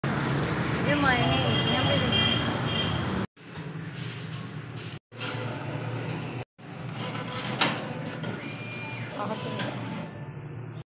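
Engine and road noise inside a moving vehicle under a woman's voice for the first three seconds. After that it is a quieter room with a steady low hum, a sharp click, and a short steady beep near the end.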